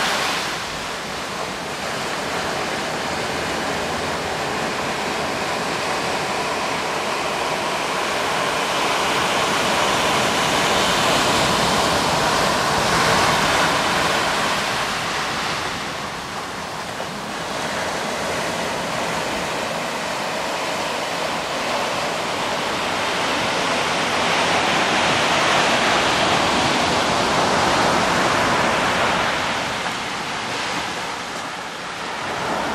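Ocean surf breaking and washing up a sandy beach: a continuous rushing noise that swells and eases as the waves come in, loudest about halfway through and again near the end.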